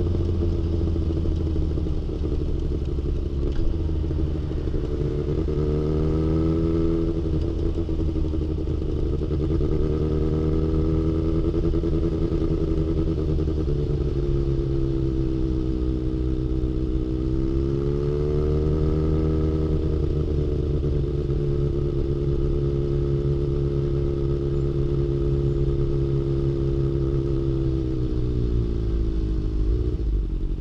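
Kawasaki Ninja ZX-6R's inline-four engine running through an aftermarket exhaust while the bike rolls at low speed, its revs rising and easing back gently three times.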